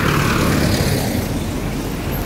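A Mercedes-Benz saloon taxi driving past close by, its engine and tyre noise fading slowly as it moves away.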